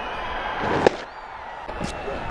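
Stadium crowd murmur with a single sharp crack of a cricket bat striking the ball just under a second in. The crowd sound drops right after it.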